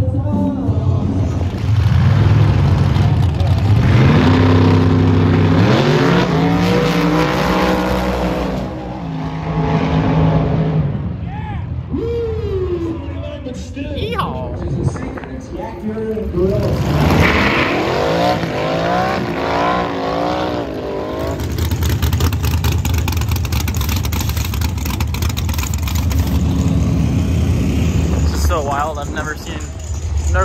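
Drag-racing cars' engines running loud and revving, stepping up in pitch several times over the first several seconds. Voices follow, and a steady low engine rumble runs through the last third.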